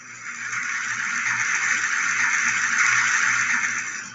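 A steady hiss of noise that swells in about half a second in, holds level, and falls away near the end.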